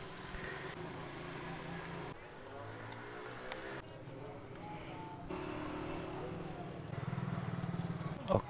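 A motor vehicle engine running, its pitch sliding a little a few seconds in, with a few faint clicks of a screwdriver working small screws on a plastic phone mount.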